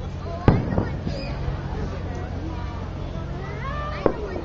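Aerial fireworks going off: a loud bang about half a second in, trailed by a short echo and a smaller crack, then a second bang at the very end.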